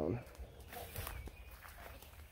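Soft footsteps walking across a mown grass lawn, faint and uneven, a few steps in under two seconds.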